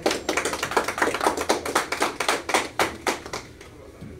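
A small audience applauding: many separate, irregular hand claps that die away about three and a half seconds in.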